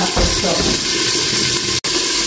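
Steady sizzling hiss of food cooking in a stainless-steel pan on the hob, broken off for an instant near the end.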